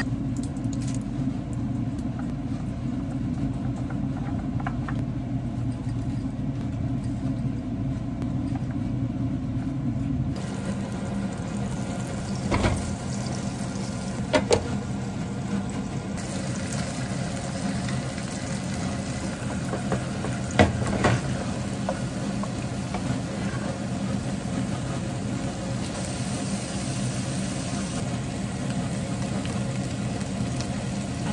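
Steady low kitchen hum. After about ten seconds, cabbage slices sizzle as they fry in a frying pan. A few sharp clinks of utensils on the pan come midway, two of them close together about two-thirds of the way in.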